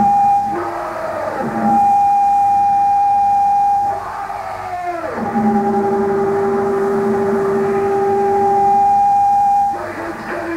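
Live power electronics noise: harsh, steady electronic tones held for seconds at a time. A few seconds in, a cluster of tones slides downward in pitch and settles into lower held tones, and the sound breaks off near the end. The sound is dull in the treble, with no high end.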